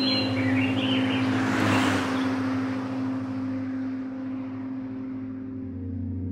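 A car passing on a highway, its rush swelling and fading away about two seconds in. Underneath is a low, steady drone, with a few bird chirps at the very start.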